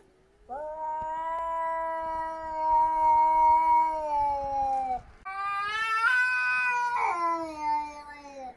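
Domestic cat caterwauling at another cat in a face-off: two long, drawn-out yowls. The first is held steady for about four seconds and sags at the end; the second is higher-pitched, rising and then falling.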